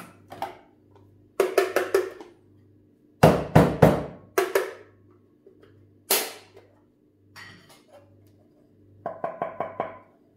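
Sharp knocks and taps from coffee grinder parts and a metal dosing cup being handled and knocked: four quick taps, a run of heavier thuds a couple of seconds later, a few single knocks, then a fast run of about six taps near the end. A faint steady hum with a soft pulse runs underneath.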